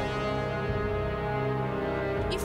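Background music under a news report, holding one steady sustained chord.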